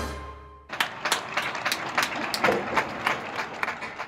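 Many hands clapping in irregular applause, starting about a second in as the last chord of a short swing-style music sting dies away.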